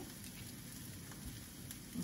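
Onion, garlic and ginger frying in a very hot wok: a faint, steady sizzle.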